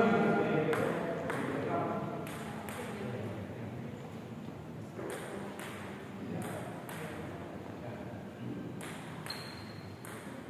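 A table tennis rally: the celluloid ball makes sharp, light clicks off the paddles and the table, roughly one or two a second at an uneven pace. Voices are loudest over the first two seconds.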